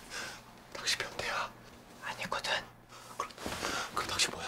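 Hushed whispered talking, breathy and without voiced pitch, in short bursts with pauses between.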